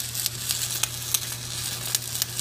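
Stick (shielded metal arc) welding arc burning a bead on a horizontal steel T-joint: a steady crackling sizzle broken by frequent sharp pops, over a low steady hum.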